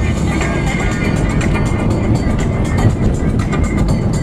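Music playing steadily over the running noise of a car driving along a road.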